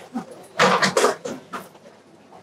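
An audience rising from their seats: a brief flurry of seat knocks, creaks and clothing rustle, busiest from about half a second to a second and a half in.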